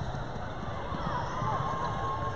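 Live basketball game sounds on a hardwood court in a large, echoing gym: a ball dribbling, short squeaky pitched sounds, and indistinct voices of players and spectators.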